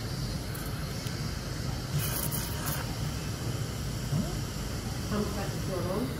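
Operating-theatre background: a steady low hum under an even hiss, with a brief louder hiss about two seconds in and faint murmured voices near the end.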